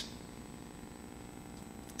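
Faint steady room tone: a low, even background hum.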